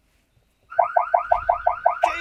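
Aeotec smart-home siren set off, starting about two-thirds of a second in: a loud, rapid train of warbling chirps, about five a second.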